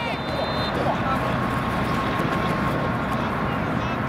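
Steady low rumbling outdoor background noise, with faint voices of players and spectators calling out around the field.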